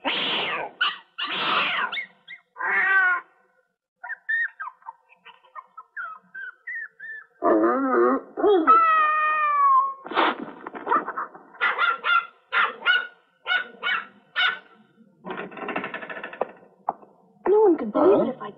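Cartoon animal voices of a cat and a small dog facing off: a hissing cat and a whimpering, yelping small dog, in a string of short calls with gaps, with some drawn-out wavering, falling cries in the middle.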